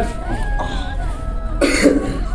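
A single short cough near the end, over background music with long held notes.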